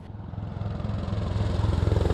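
Military helicopter flying low past, its rotor beating in rapid, even pulses over the turbine's hum, growing steadily louder as it approaches.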